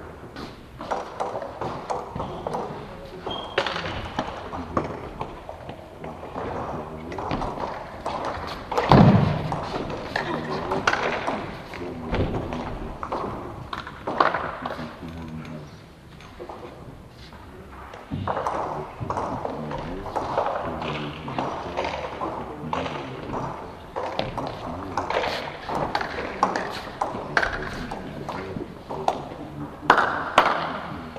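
Indistinct voices talking in a large hall, with scattered sharp clicks and taps of a table tennis ball and thuds of footsteps. One louder thud comes about nine seconds in.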